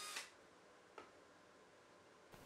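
Cordless drill driving a screw into a metal box latch, stopping just after the start. Then near silence, with one faint click about a second in.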